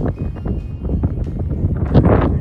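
Wind buffeting the phone's microphone outdoors: a loud, gusting low rumble.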